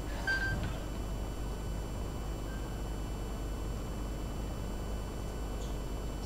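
Quiet gymnasium ambience during a free throw: faint steady room noise over a low hum, with a brief faint high squeak about a third of a second in.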